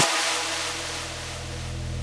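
Breakdown in a progressive psytrance track: the kick drum drops out, leaving a low synth drone holding steady under a wash of noise that fades away.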